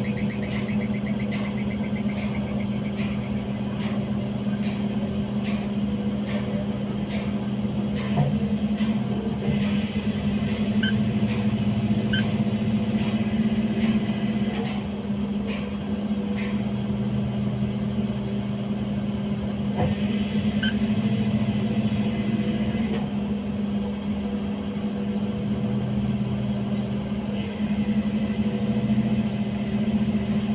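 Heavy industrial machinery running with a steady low hum. A light regular ticking, about three ticks every two seconds, runs through the first eight seconds, and a hiss comes in twice for a few seconds.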